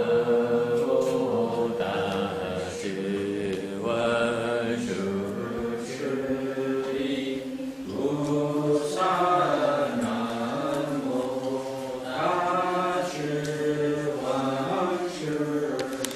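A group of voices chanting a slow, melodic Buddhist chant in unison, with long held notes that rise and fall. The ring of a struck bell or bowl dies away at the very start.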